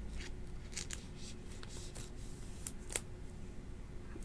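Faint rustles and a few sharp little clicks of a thick trading card being handled between the fingers, over a low steady room hum.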